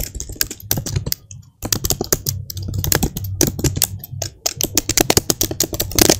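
Typing on a computer keyboard: a fast, irregular run of keystroke clicks, with a brief pause about a second and a half in.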